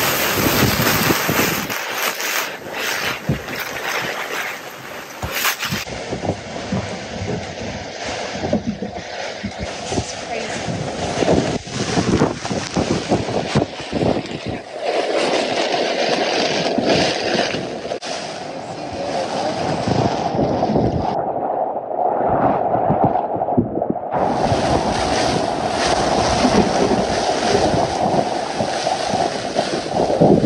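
Gale-force wind gusting across the microphone: a dense rushing noise with frequent buffeting thumps. It drops away briefly about two-thirds in, then comes back.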